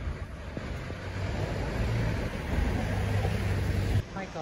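City street traffic noise, with a vehicle engine rumbling close by and growing louder over the last couple of seconds before it cuts off suddenly.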